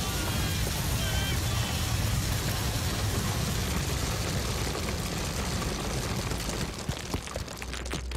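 A torrent of grain seeds pouring out of a chute and piling up, a dense rushing noise with a deep rumble. Near the end it thins into a scattered patter of single seeds landing.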